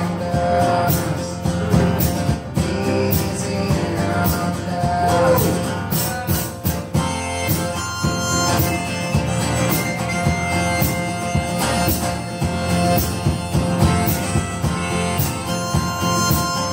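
Live acoustic guitar strummed in a steady rhythm while a harmonica plays held notes over it in a bluesy style.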